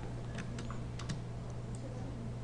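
A handful of light, separate clicks from a computer keyboard and mouse while an image is resized on screen, over a steady low hum.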